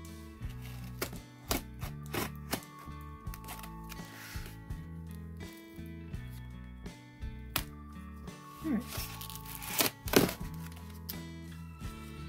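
Background music playing over the handling of a taped cardboard box: sharp knocks and short rustles of cardboard as fingers pry at the flap, loudest about ten seconds in.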